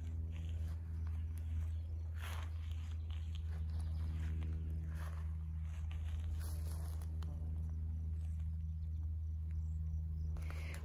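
A steady low hum with a few faint rustles over it.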